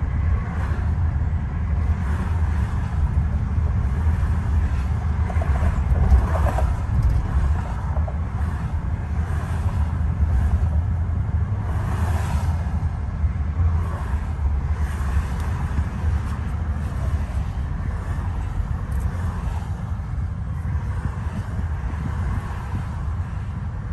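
Steady low road rumble of a car cruising at highway speed, heard from inside the cabin. A couple of brief swells come about six and twelve seconds in.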